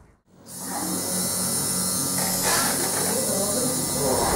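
Tattoo machine buzzing steadily as the needle works on skin, fading in from a moment of silence about half a second in.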